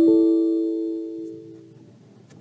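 Windows error chime from the computer: a single chord of a few tones that rings and fades away over about two seconds. It is the alert for a "No device attached" error, the CarProg programmer having lost its connection to the PC.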